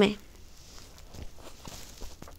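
A reading voice ends on its last word at the very start, then a quiet pause with low room hum and a few faint, scattered clicks.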